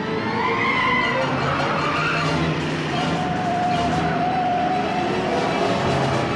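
Film soundtrack of cars speeding on a winding road: engines running hard, with gliding tyre squeals in the first couple of seconds. From about halfway through, a steady high tone is held for about two seconds.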